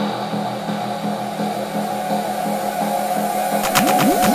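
Electronic dance track in a breakdown with the kick and bass dropped out: a repeating synth pattern over a sustained band of sound. Near the end come a few sharp clicks and a run of quick falling pitch sweeps.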